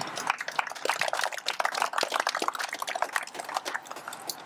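Audience applauding: many hands clapping at once, thinning out near the end.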